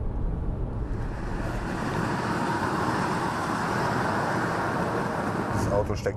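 Steady tyre and wind noise inside the cabin of an Opel Ampera-e electric car cruising at about 114 km/h on the motorway, with a low rumble beneath. It swells over the first second, then holds even. There is no engine sound.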